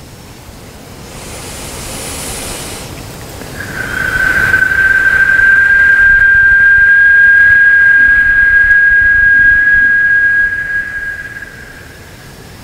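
A single high whistle note, held steady and loud for about seven seconds before tailing off, preceded by a brief breathy hiss.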